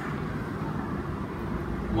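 Steady low background rumble of room noise during a pause in the talk, with no distinct event.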